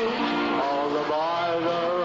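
Big band orchestra playing: several held notes sounding together, stepping to new pitches about every half second.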